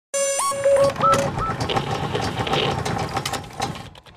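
Electronic logo-intro sound design: a few short synth beeps that jump and bend upward in pitch in the first second and a half, then a rapid stream of clicks and glitchy ticks that fades out near the end.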